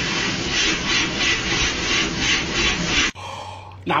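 Stuffing machine blowing fibre filling through its metal tube into a plush toy cat: a steady rush of air with a flutter about four times a second, cutting off suddenly about three seconds in.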